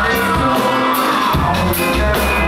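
A live band playing: electric guitar, saxophone, keyboards, bass and drums, with a long falling melodic line over the first second or so and regular cymbal strikes.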